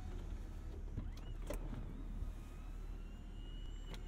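Electric folding soft top of a BMW Z4 retracting: a faint steady motor whir with a few light clicks, over the low idle of the car's turbocharged inline-six.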